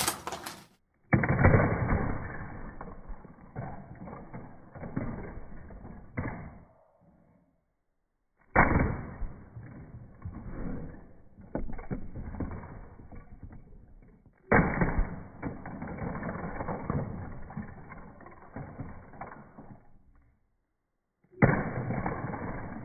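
Slowed-down, pitched-down slow-motion recording of a Lego Saturn V model smashing into a Lego Hogwarts castle. Four times a sudden crash starts a drawn-out clatter of plastic bricks, each dying away over several seconds.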